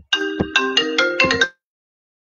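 A ringtone melody of marimba-like notes, stepping between pitches, cuts off abruptly about one and a half seconds in. Dead digital silence follows as the stream's audio drops out.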